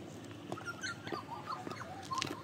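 Clear acrylic platform high-heel sandals clicking on a concrete footpath, about one step every half second. From about half a second in, short wavering high squeaky chirps of uncertain origin sound over the steps.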